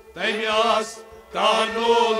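Men's voices singing Kashmiri Sufiana kalam in two phrases, with harmonium and rabab accompaniment and a short dip between the phrases.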